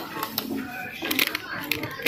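Background music and faint voices in a small room, with a few light clicks and rustles as plastic packs of earrings are handled.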